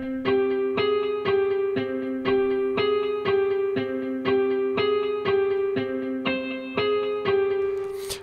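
Omnisphere software synthesizer preset playing a MIDI melody of short notes with a sharp attack, about two a second. Every note has the same velocity, so each one sounds at an even loudness.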